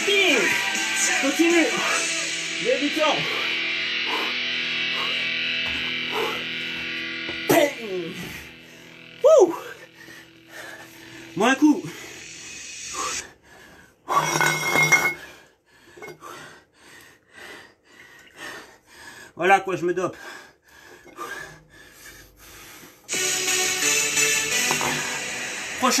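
Background rock music with guitar and a singing voice. It thins out and breaks up for several seconds in the middle, then comes back full near the end.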